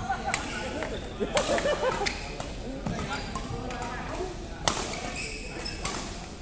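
Badminton rally: several sharp cracks of rackets striking the shuttlecock, irregularly spaced about a second or more apart, over a murmur of background voices.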